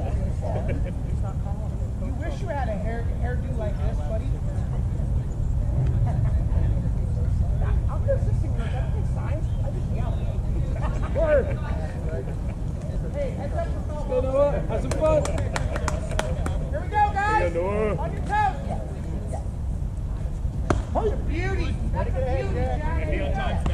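Players and spectators calling out across a baseball field, scattered and unclear, with a louder stretch of voices late on, over a steady low rumble. A quick run of sharp clicks comes about two-thirds of the way through.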